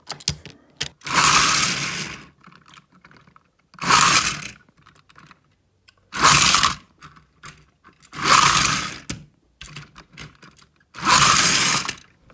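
Toy trains and coaches being handled and pushed along plastic track: five loud rattling bursts, each about a second long, with small clicks and taps between them.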